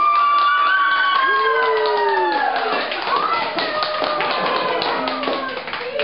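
Small group applauding with quick hand claps, while high voices call out in long, slowly falling cheers over the clapping.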